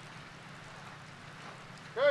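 Steady, low background hum and hiss of outdoor ambience, with no gunshots.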